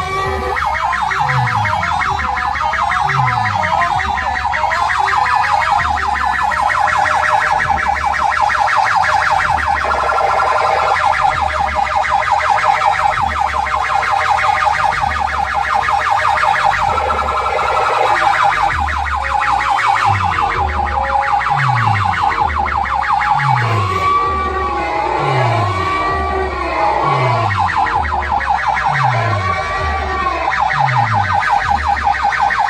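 DJ sound system blasting electronic dance music through a tower of horn speakers: repeated falling bass drops under a fast, buzzing siren-like effect. Wavering siren tones come in near the start and again in the last several seconds.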